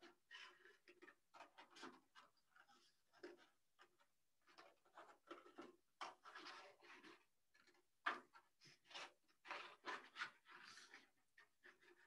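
Scissors cutting through stiff black paper, faint irregular snips and rustles of paper with short pauses between them; one cut a little louder about eight seconds in.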